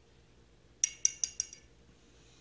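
Four quick, ringing clinks, a paintbrush tapped against a hard rim, starting a little under a second in.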